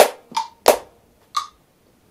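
Sharp hand claps playing a quarter-note-triplet figure against a phone metronome set to 60, which clicks about once a second.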